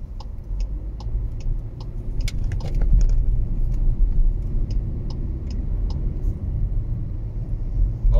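Road and engine noise of a car driving at speed, heard from inside the cabin: a steady low rumble that grows a little louder about two seconds in, with small scattered clicks and rattles.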